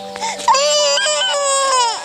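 A toddler crying: one loud wail that starts about half a second in and falls in pitch as it ends.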